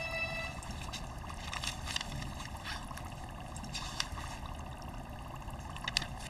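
Faint rustles and light taps of books being handled and pages leafed through, scattered at irregular moments over a low, steady background hiss.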